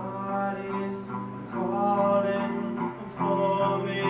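A man singing long held notes while playing an electric guitar.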